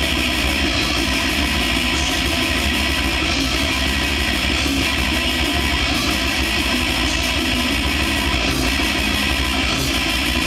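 Live thrash/death metal band playing at full volume: distorted electric guitars and drums in a dense, continuous wall of sound.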